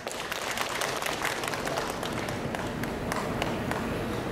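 Audience applauding steadily: a dense patter of many hands clapping in a theatre hall.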